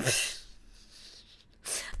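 A woman's short breathy laugh, a burst of air at the start that dies away within half a second, then a quick sharp breath in near the end.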